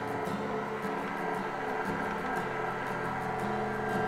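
KitchenAid stand mixer motor running steadily at low speed, driving the pasta roller attachment as a sheet of dough feeds through the rollers.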